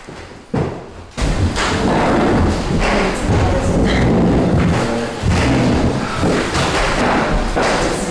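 Loud, continuous bumping and thudding of people getting up and moving around tables fitted with microphones, with papers being handled. It starts about a second in.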